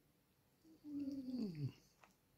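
A single vocal call, about a second long, that slides down in pitch.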